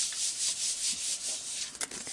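A palm rubbing and smoothing a freshly glued sheet of paper flat onto a paper envelope, in quick repeated swishing strokes. Near the end a few crisp paper clicks as a sheet is lifted.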